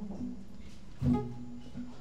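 Acoustic guitar played softly, with a plucked chord about a second in that rings on.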